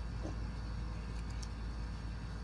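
A steady, low background rumble with no distinct events in it.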